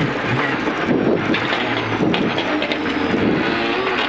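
Rally car engine running hard at speed on a gravel stage, with tyre and gravel noise and scattered small clicks of stones against the car.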